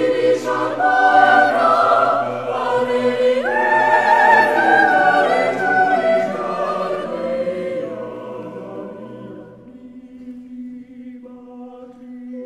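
Unaccompanied vocal ensemble singing a Basque song in polyphonic harmony: sustained chords over a held bass note. Around two-thirds of the way through the phrase dies away to one quiet held note, and the voices come back in near the end.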